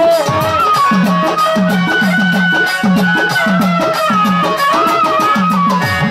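Baul folk music, instrumental passage: a violin plays a sustained, sliding melody over a steady drum beat of about three strokes a second and fast, even ticking percussion.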